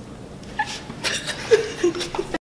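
Several young women laughing and giggling in short, high-pitched bursts, starting about half a second in and growing louder toward the end.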